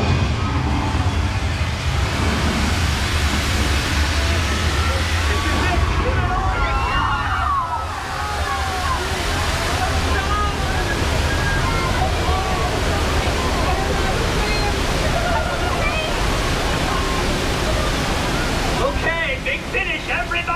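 A theme-park ride's simulated subway earthquake: a torrent of flood water rushing and splashing over a deep, steady rumble. Riders' voices rise through the noise.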